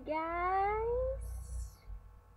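One drawn-out vocal call that glides smoothly upward in pitch for about a second, followed by a short breathy hiss.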